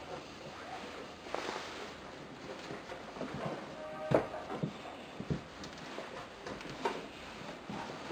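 Handling noise from the transmitter and its cables: scattered light knocks and rubs over a faint hiss, with a short squeak-like tone about four seconds in.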